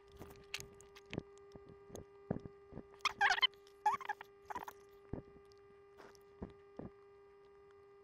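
Soldering wires onto a mains power switch: small scattered clicks and taps from handling the wires and iron, with a few short crackling sizzles about three and four seconds in as the hot iron melts the solder and flux. A faint steady hum runs underneath.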